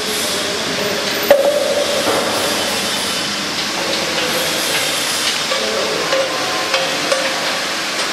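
Steady workshop noise, a hiss with a faint hum running under it, and one sharp knock a little over a second in.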